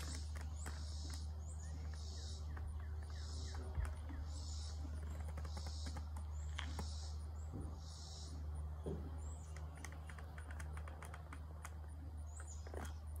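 Outdoor ambience: high-pitched chirps repeating about once a second over a steady low hum, with a few faint clicks.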